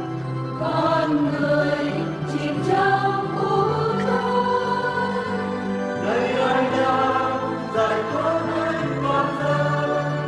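Choral music: voices singing together in long held notes over sustained low notes that shift every second or two.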